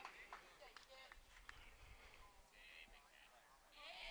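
Near silence: quiet ballfield ambience with faint, distant voices of players calling out and a few faint clicks.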